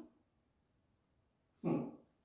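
A man's short, voiced breath, like a stifled sob or heavy exhale, about one and a half seconds in, against a quiet room.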